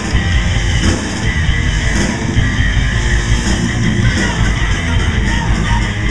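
Crossover thrash metal band playing live at full volume: distorted electric guitars, bass and drums, loud and dense throughout.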